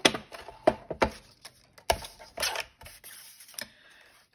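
Plastic paper trimmer being set down on a cutting mat and the paper shuffled into place under it: about half a dozen sharp clicks and knocks at uneven intervals, with a short scrape about halfway through.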